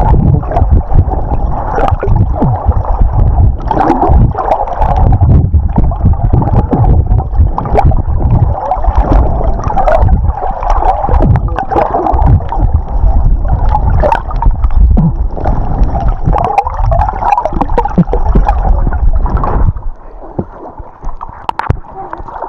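Muffled underwater rumbling and gurgling of seawater moving around a submerged camera as the swimmer strokes along. About twenty seconds in, the sound drops sharply as the camera comes up to the surface.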